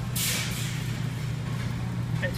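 A steady low hum with a short burst of hiss about a tenth of a second in, lasting about half a second.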